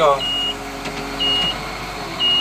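W130 wheel loader's dashboard warning alarm beeping, short high beeps about once a second over the running engine; the alarm was set off by a loose wire from a splice underneath the machine.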